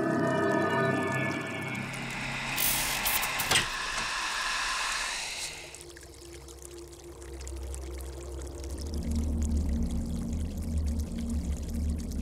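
Eerie horror background score. Sustained droning tones give way to a noisy swell that ends in a sharp hit about three and a half seconds in, then a deep low drone rises.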